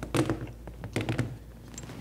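A few short knocks and taps from handling a clamp and backdrop fabric and setting them down on the floor, in two small clusters: one near the start and one about a second in.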